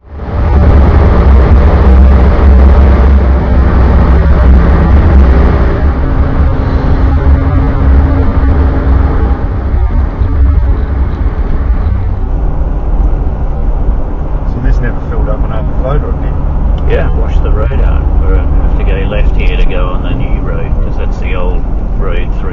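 Steady low rumble of a 4WD's engine and tyres heard inside the cabin while cruising at about 50–60 km/h on a sealed road, picked up by a dashcam microphone. Faint voices come in over it in the second half.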